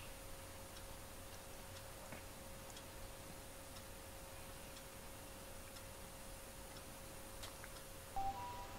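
Small humidifier running with a faint steady hum, with light ticks scattered unevenly through it.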